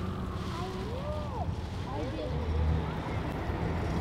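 City street traffic: a steady low rumble of vehicles that swells as one passes about halfway through, with the tail of a distant siren fading out about half a second in and a few faint voices.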